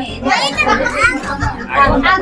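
Several young children's high-pitched voices talking and calling out over each other, mixed with adult chatter.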